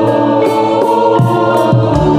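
Live music for a kuda kepang horse dance: a stack of sustained notes held steady, with low drum strokes dropping in pitch twice in the second half.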